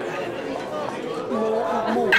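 Background chatter in a busy café: many people talking at once in a steady murmur of overlapping voices, with one voice standing out more clearly towards the end.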